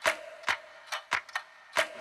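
Sharp, dry ticks in an uneven rhythm, about three a second, some with a brief ringing tone: clicking sound effects of an animated title sequence.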